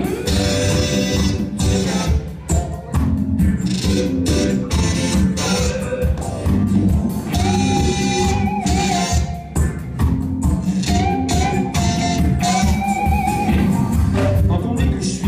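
Live band playing a song with guitars, bass and drums at a steady beat, with long held melody notes riding over it twice in the second half.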